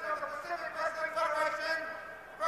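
A ring announcer speaking into a hand-held microphone, introducing the officials standing in the ring.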